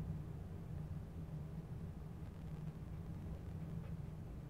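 A low, steady background hum with faint room noise; the marker strokes on the paper make no distinct sound.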